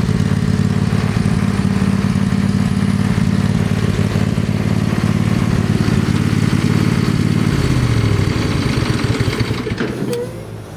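Poulan Pro riding lawn mower engine running steadily. Near the end its pitch drops and it winds down, throttled back.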